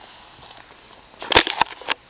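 Handling noise: a brief soft hiss, then a quick cluster of sharp clicks and crackles about a second and a half in.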